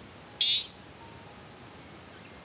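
A parrot gives one short, shrill screech about half a second in.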